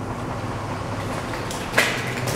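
Steady rushing background noise, with one short, sharp noise about three-quarters of the way through.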